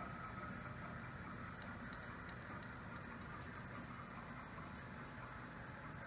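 Stepper-motor drive of a DIY 5-axis CNC router's gantry running as it travels along the axis: a faint, steady mechanical hum.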